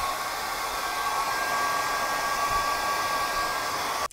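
ANIEKIN 1875W compact ionic hair dryer running steadily while blowing on hair: a steady high motor whine over a rush of air.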